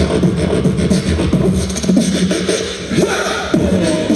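Live beatboxing into a handheld microphone through a concert PA: a steady beat of deep kick-drum sounds and short, crisp hi-hat-like clicks made with the mouth.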